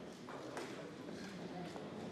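Light, scattered clicks and taps of members pressing the voting buttons on their desk consoles, over a quiet murmur of voices in the debating chamber.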